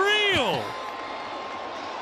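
A broadcast commentator's drawn-out exclamation falling away in the first half-second, then steady ballpark crowd noise in the stands.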